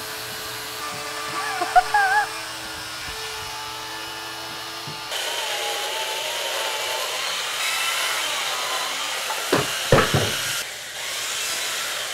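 Chainsaw running steadily as it cuts into a block of ice, throwing off ice chips, with a few sharp knocks about ten seconds in.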